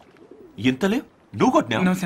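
A man's voice: after a short pause, two brief vocal sounds, then a longer spoken phrase near the end.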